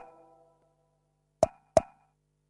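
Two short, pitched plopping sound effects about a third of a second apart near the end, over a faint steady low hum; the ring of a similar pop dies away at the start.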